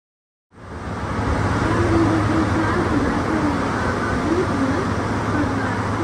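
Mount Washington Cog Railway train climbing, heard from inside the passenger car: a steady running rumble with a constant low hum, cutting in suddenly about half a second in.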